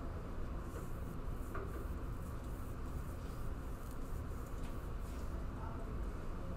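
Quiet classroom with a steady low hum and faint, scattered scratching of pencils on paper as students work a problem.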